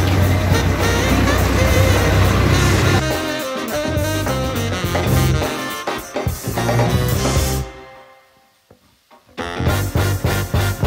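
Background music with a steady beat, with a steady low hum under it for the first three seconds. The music drops almost to silence for about a second and a half near the end, then starts again.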